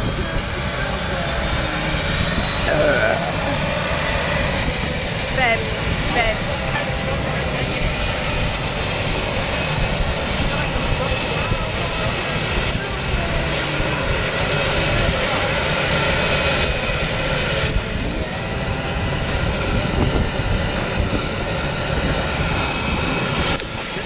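Jump plane's aircraft engines running on the ground: a steady, loud drone with a thin high whine held throughout.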